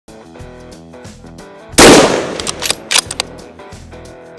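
Music plays, then a single loud rifle shot goes off a little under two seconds in, ringing out in a long decay, with a few shorter sharp cracks after it.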